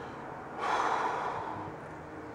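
A man's long, breathy sigh, starting about half a second in and lasting about a second, the sound of weariness.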